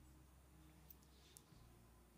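Near silence: faint low room tone with two faint clicks, about a second apart, near the middle.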